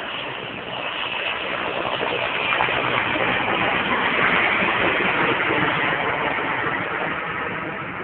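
Erickson S-64 Air-Crane firefighting helicopter passing low overhead: steady rotor and turbine noise that builds to its loudest about halfway through, then fades as it moves away.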